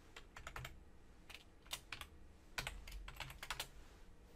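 Faint typing on a computer keyboard: several short runs of quick keystrokes.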